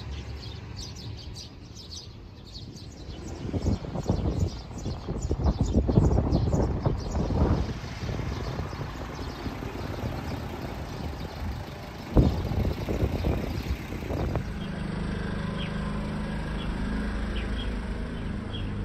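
Small birds chirping repeatedly over a low rumble that swells for several seconds, with one sharp knock partway through and a steady low hum later on.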